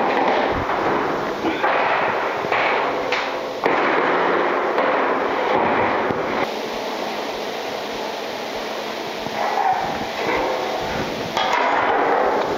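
A galvanized sheet-metal door being turned over by hand: the thin steel sheet rattles and wobbles with several sudden clanks for about the first six seconds, then gives way to a quieter, steady noise.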